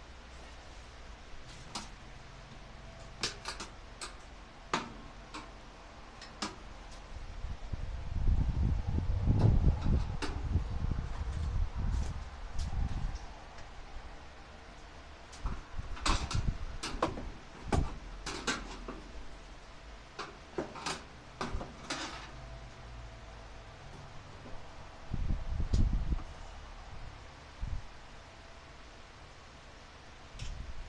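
Handling noise in a clothes dryer's sheet-metal cabinet: scattered light clicks and taps of a screwdriver and hands against metal, bunched in the middle. Low dull bumping and rumbling a third of the way in and again near the end.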